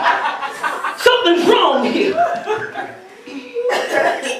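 A man preaching into a microphone, with a short pause about three seconds in.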